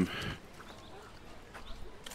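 A voice trailing off at the end of a hesitant 'um', then a faint, steady background hiss with a few soft ticks.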